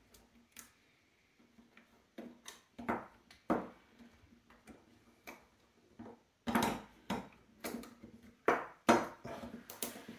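Small clicks and taps of plastic and metal airsoft gearbox parts being handled and fitted by hand: the cylinder assembly, tappet plate and spring going into the open gearbox shell. Sparse quiet taps at first, then a run of louder knocks in the last few seconds.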